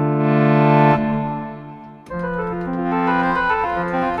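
Omenie's Pipe Organ iPad app playing sustained sampled pipe-organ chords. The first chord swells slightly and then fades away. About two seconds in, a fuller, brighter chord comes in as the expression pedal brings in an extra section of stops.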